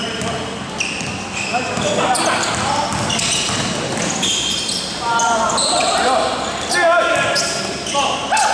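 Basketball being dribbled on an indoor court, with short high squeaks of sneakers on the floor as players cut and drive. Voices of players and spectators echo around the hall, loudest near the middle and the end.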